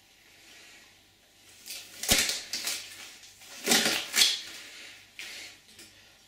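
Latex gloves being pulled off the hands: a sharp snap about two seconds in, then short rubbery rustling bursts, and a light click near the end.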